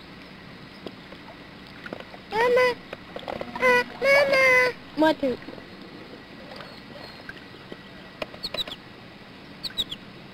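A child's high voice calling out three times, a few seconds in, the middle call the longest, over a steady outdoor hiss.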